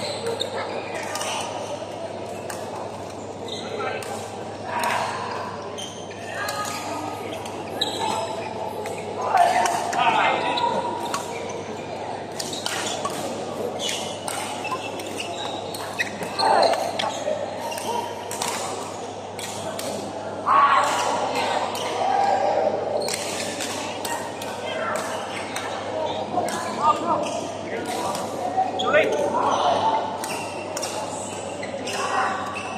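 Badminton rally in a large echoing hall: sharp racket strikes on the shuttlecock and players' footsteps on the court, coming irregularly throughout. Underneath are voices talking.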